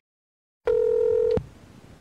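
A single steady electronic beep, held for about three-quarters of a second and cut off with a click, then faint hiss.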